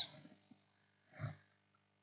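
Near silence between spoken lines, broken once about a second in by a short, faint vocal sound from the narrator.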